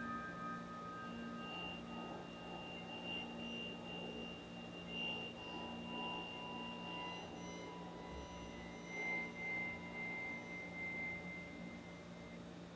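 Soft, high, pure electronic tones from the computer's speakers, held for several seconds each and entering one after another at different pitches so that they overlap. A low steady hum lies underneath. In the first second the last ringing of a piano chord dies away.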